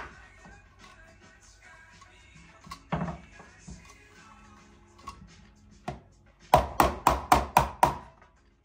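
Faint background music throughout, with a single knock about three seconds in and then a quick run of about seven loud knocks, some five a second, near the end, from kitchen food preparation: a knife on a wooden chopping board or a plastic container rapped against a bowl.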